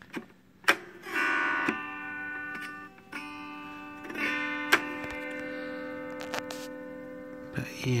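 Tokai Chroma Harp autoharp strummed twice, about a second in and again about four seconds in, its many strings ringing on together and slowly fading. Two sharp clicks come just before the first strum.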